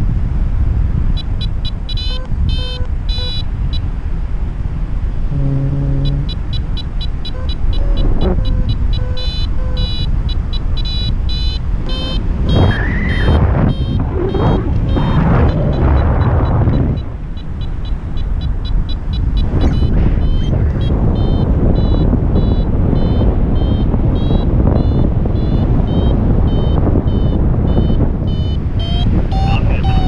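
Heavy wind rushing over the microphone in paraglider flight, with a flight variometer beeping in rapid, repeated high pulses, the sound a vario makes when the glider is climbing in lift. The beeping pauses briefly early on, then keeps going.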